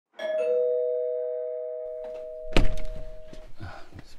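Two-tone doorbell chime, a higher note then a lower one, ringing and slowly fading over about three seconds. About two and a half seconds in there is a loud thump as the door is opened.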